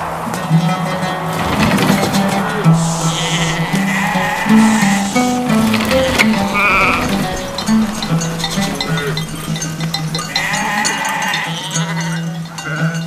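A flock of sheep bleating, several separate wavering calls, over a film score with a sustained low drone.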